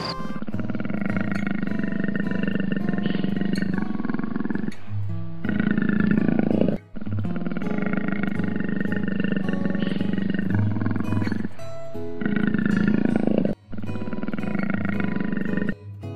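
Big cat growling in long, drawn-out growls, broken twice by sudden short gaps about seven seconds apart.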